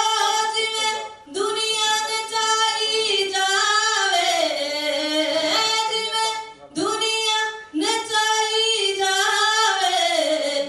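A woman singing solo into a microphone: long held notes that bend and slide in pitch, in phrases with short breaks about a second in and again near seven seconds.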